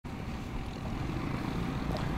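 Wind rumbling steadily on the microphone of a camera carried at walking pace.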